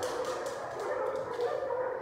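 A dog vocalizing, a continuous run of sound that does not break off.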